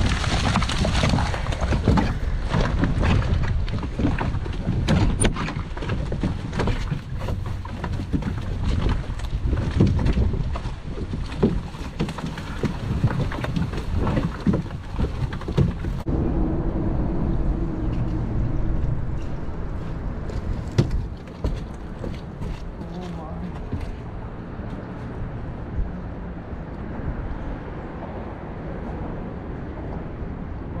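Many knocks and rustling as live mullet flop in a monofilament cast net piled on a skiff's deck, with wind on the microphone. After a sudden change about halfway through, a quieter steady wash of the boat moving on the water, with a brief hum and a few clicks.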